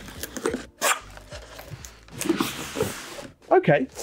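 A utility knife slicing through the tape along the edge of a large cardboard monitor box, with the cardboard scraping and rustling and a sharp knock about a second in.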